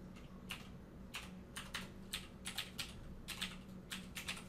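Computer keyboard keys clicking in an uneven run of about a dozen keystrokes as a file name is typed, faint over a steady low hum.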